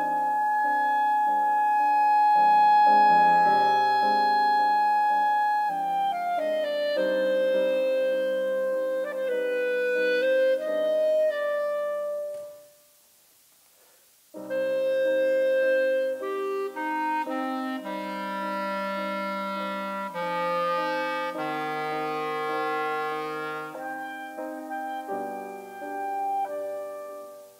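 Clarinet and piano playing a classical piece together. The clarinet opens on a long held note, then moves through a running passage. Both stop for a pause of about two seconds near the middle, then start again.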